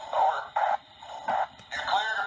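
A thin, tinny, radio-like voice in short phrases, with the low and high end cut away.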